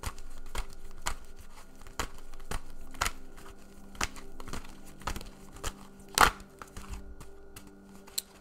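A deck of tarot cards being shuffled by hand: irregular papery riffling and clicking of cards, with one louder click about six seconds in.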